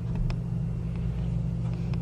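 A steady low hum, unwanted noise on the recording, with a few faint clicks as the camera is handled.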